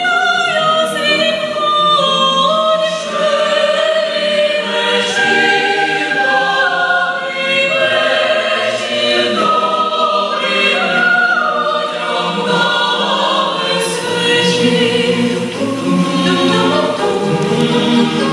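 Mixed youth choir of men's and women's voices singing a Ukrainian carol a cappella in several parts, moving through sustained chords without a break.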